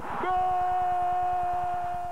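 An air horn blown in one long, steady note, starting with a short burst of noise, as the headed goal goes in.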